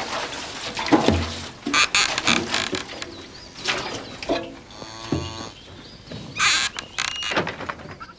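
Farmyard goat noises, including a wavering bleat about five seconds in, among other short scuffles and knocks.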